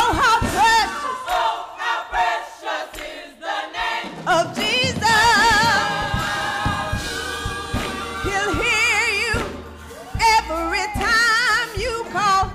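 Gospel song sung live: a woman lead singer with a wavering vibrato on her held notes, a choir singing behind her. The singing thins briefly about two to four seconds in.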